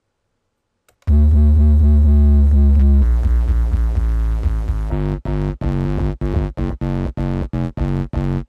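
Dubstep track playing back from a Mixcraft 6 project, starting after about a second of silence: a loud, deep synthesizer bass held at first, changing about three seconds in, then chopped into a quick stutter about three times a second from about five seconds in.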